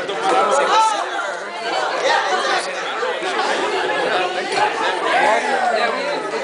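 Many people talking at once: overlapping chatter of a crowd of voices.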